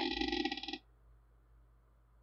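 A man's voice holding out the end of a word for under a second, then near silence: room tone.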